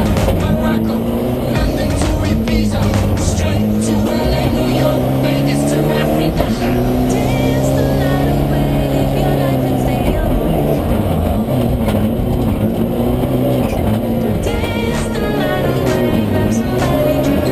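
Race car engine revving up and down as the car is driven hard, heard from inside the caged cabin, over background music.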